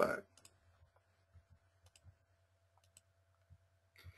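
A few faint computer mouse clicks over a low steady hum and a faint steady tone, with the last word of speech ending just at the start.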